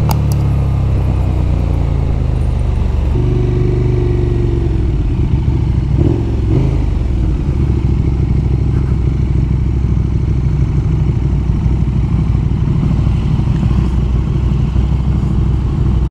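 KTM 1290 Super Duke GT's V-twin engine running at low speed. The engine note shifts about three seconds in, then runs on at low revs.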